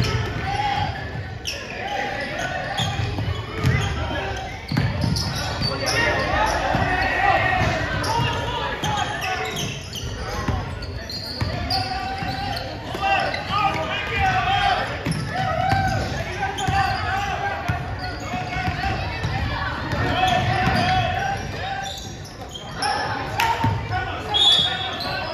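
A basketball bouncing on a hardwood gym floor during play, irregular dribbles and thuds, with indistinct voices echoing in the large gym.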